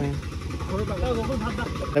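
Faint background voices of people talking, over a steady low rumble.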